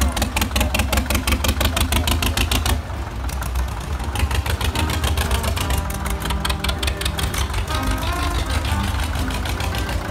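Zetor 25A two-cylinder diesel tractor engines running as the tractors pass close by, with a fast, even chug over a deep rumble. A melody of music comes in about halfway.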